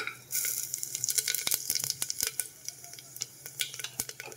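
Whole spices, including cumin seeds and cinnamon, sizzling and crackling in hot oil in the bottom of a pressure cooker. The crackle starts a moment in, as the spices hit the oil, then thins out and dies away near the end.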